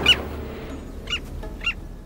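Birds calling: a loud call falling in pitch at the start, then two short calls about a second in and a little later, over a low steady rumble.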